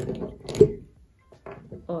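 A single sharp knock, like a small container being set down on a tabletop, about half a second in. A voice trails off just before it and a short voice sound follows near the end.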